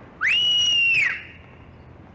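A loud two-finger whistle that swoops up to a high pitch, holds it for about a second, then drops away.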